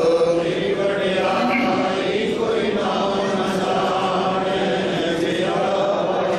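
A man chanting a Sikh prayer into a microphone in a drawn-out, sung tone.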